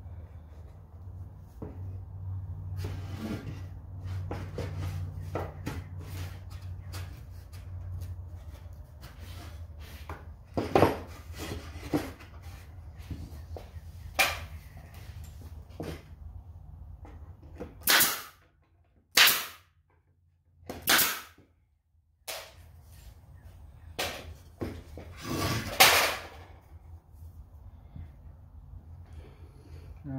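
Pneumatic stapler driving staples into wooden boards: a series of sharp single shots from about ten seconds in, spaced a second or more apart, with lighter knocks of wood being handled between them. A low steady hum runs under the first ten seconds or so.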